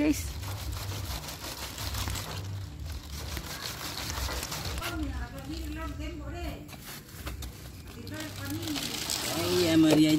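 Stiff, spiky pineapple leaves rustling and crackling as the plant is pushed through and handled, with a rougher burst of rustling near the end.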